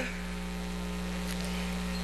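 Steady low electrical mains hum in the sound system's feed, with no other events.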